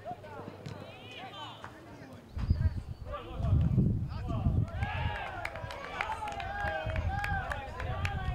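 Players shouting and calling to one another across an outdoor football pitch, distant and without clear words, with the calls coming thickest in the second half.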